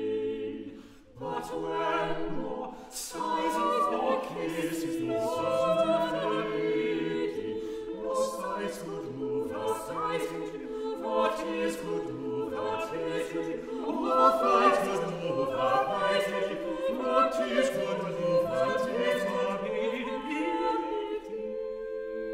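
Unaccompanied vocal ensemble singing an English Renaissance madrigal in several interweaving parts. The voices break off briefly about a second in, then re-enter together and carry on.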